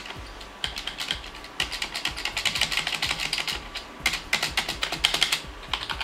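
Spacebar of a Redragon Centaur K506 membrane keyboard pressed over and over in quick runs, each press a click with the dry squeak ('nheque-nheque') of its stabilizer bar. It sounds like it needs oil, a squeak that developed after weeks of use.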